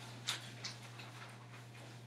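Quiet room tone: a steady low hum with a few soft ticks in the first second.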